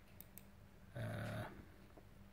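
Quiet room tone with a low hum and a couple of faint clicks, then a man's short, low hesitation "uh" about a second in.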